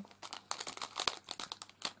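Clear plastic packet crinkling as it is handled in the fingers, a quick run of small crackles.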